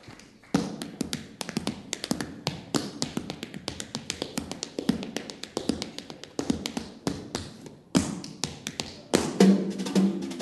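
Tap shoes on a stage floor: a quick, uneven run of taps starting about half a second in, with a brief break near the end. A snare drum comes in with the taps just before the end.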